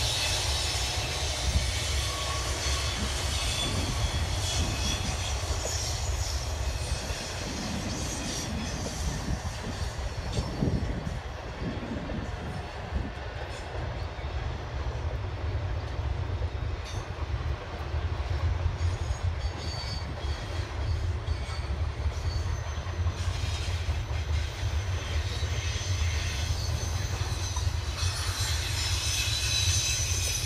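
Double-stack intermodal container cars of a freight train rolling slowly past: a steady low rumble of wheels on rail, with high-pitched wheel squeal coming and going, strongest near the start and near the end.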